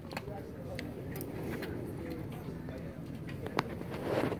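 Faint, distant voices of spectators around a ballfield, with a few light clicks.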